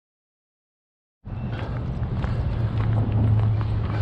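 Silence for about the first second, then outdoor sound cuts in suddenly: footsteps crunching on a gravel and crushed-shell bank over a steady low hum.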